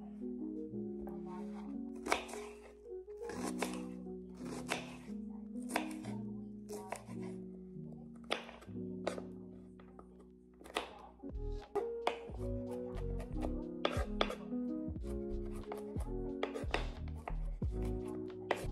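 Background music over a chef's knife chopping onions on a wooden cutting board set on a towel: irregular knife strikes against the board, coming faster in the second half.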